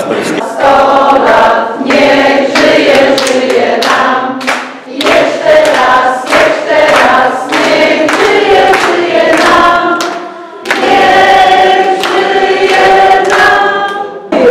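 A roomful of people singing together as a group, held notes sung in phrases with short breaks about 5 and 10 seconds in, with hands clapping along.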